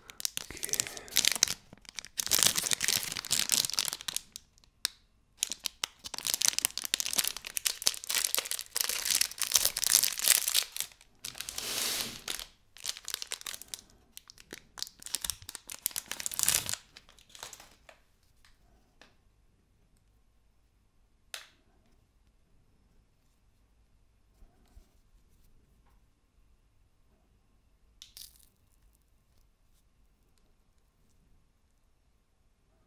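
Plastic wrapper of a Nestlé Lion Black & White chocolate bar being torn open and crinkled by hand, a busy run of crackling tears and rustles that stops about 17 seconds in. A few single faint clicks follow.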